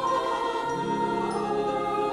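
Choir singing long, slow held chords, moving to a new chord about two-thirds of a second in.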